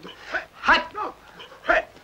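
A man's voice yelling short, bark-like shouts of "No!", four in quick succession, each rising and falling in pitch. It is a grating, off-key voice.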